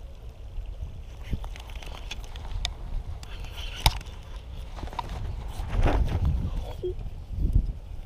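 Wind buffeting the microphone with a steady low rumble, with a few sharp clicks from handling a baitcasting rod and reel, the clearest about four seconds in.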